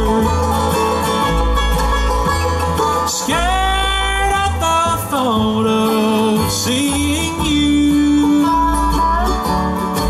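Live bluegrass band playing an instrumental break: banjo, acoustic guitar, mandolin, upright bass and a steel-bar (dobro-style) guitar, with long lead notes that slide up and down over a steady bass line.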